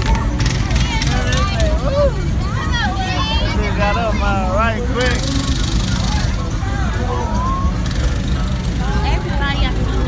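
Cars rolling past on the street, a steady low rumble, with people's voices calling over it. A hissing rush rises about five seconds in as a car passes close.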